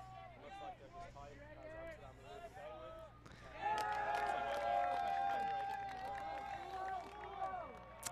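Players' voices carrying across the pitch, faint at first. About three and a half seconds in, several shout at once and one long drawn-out call is held for about three seconds, as a foul is called on a throw.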